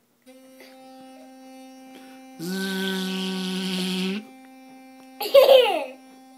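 Sonicare electric toothbrush running with a steady hum, then a much louder, lower buzz with a hiss for nearly two seconds in the middle before it drops back to the plain hum. A young child's voice breaks in briefly near the end.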